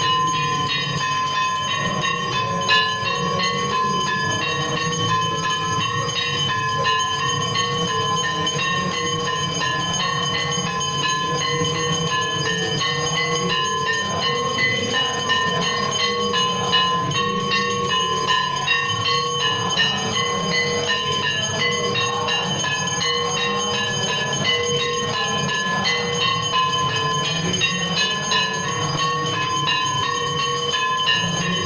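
Temple bells ringing continuously for aarti, several metallic tones held steady without a break over a dense low rumble.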